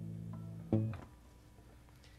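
Hollow-body guitar ending a song: the last chord rings and fades, then one short final strum about three-quarters of a second in, quickly damped.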